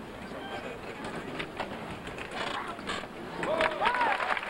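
Arena crowd murmur with a few soft thumps, the footfalls of a gymnast's run into a tumbling pass on a sprung floor. A voice in the crowd calls out "oh" near the end.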